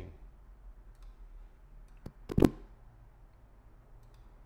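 Computer mouse button clicks: one faint click about two seconds in, then a louder quick double click, over a low steady room hum.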